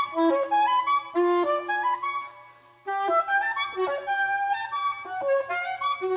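Soprano saxophone playing a fast melodic line of quick successive notes, breaking off for a moment a little past halfway before the run resumes.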